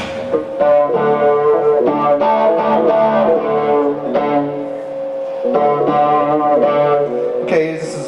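Live instrumental passage on an electric keyboard and Chapman Stick: a short run of held chords that change about once a second, with a steady high note sustained underneath. The chords break off briefly near the middle and stop just before the end.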